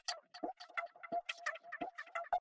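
Faint, irregular run of short clicks and ticks, about five a second.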